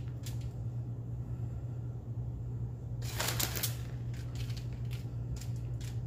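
Shredded cheese being scattered and spread by hand over a tortilla on a foil-lined tray: faint light rustles and small clicks, with one louder crinkling rustle about three seconds in. A steady low hum runs underneath.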